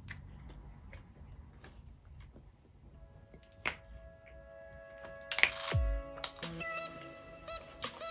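Faint wet clicks of a mouth chewing a large wad of bubble gum. About three seconds in, background music with held notes comes in. A little past the middle comes a sudden loud hit and a low swoop falling in pitch.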